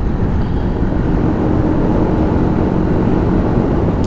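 Brixton Rayburn 125 single-cylinder motorcycle running at a steady cruise, mixed with wind rushing over the helmet microphone through the partly opened visor.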